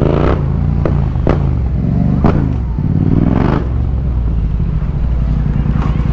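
Yamaha MT-07's parallel-twin engine running at low road speed, its revs rising and falling several times, with a few sharp clicks in the first half.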